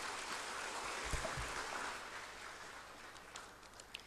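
Audience applause in a hall, an even patter of clapping that fades away over a few seconds.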